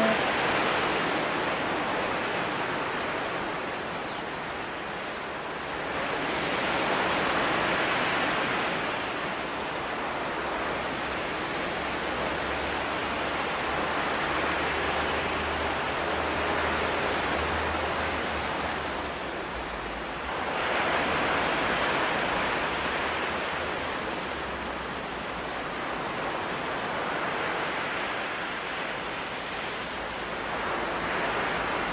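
Ocean surf: small waves breaking and washing up a beach in a steady rush that swells twice, about six seconds in and again about twenty seconds in.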